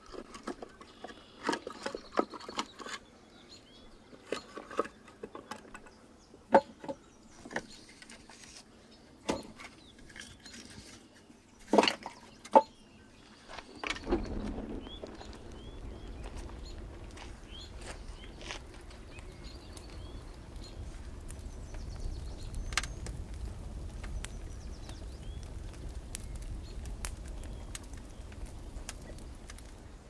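Split firewood logs knocking and clattering as they are stacked into a clay dome oven, with the loudest knocks about twelve seconds in. From about halfway through, a wood fire burns in the oven: a steady low rush with occasional crackles.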